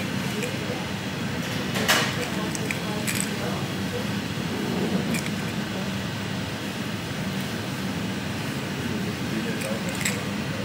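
Busy shop room tone: a steady low hum with background voices that cannot be made out. There is a sharp clink just before two seconds in and a fainter one about a second later.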